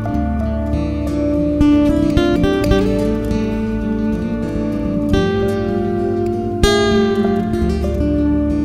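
Instrumental break in a song: acoustic guitar plucking and strumming over steady held notes.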